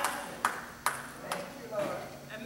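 Three sharp taps about half a second apart, with a faint voice in between.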